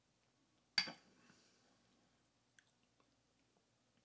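A single wet lip smack about a second in as a sip of beer is tasted, followed by a couple of faint ticks.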